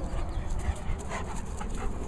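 A dog panting close by in short, irregular breaths.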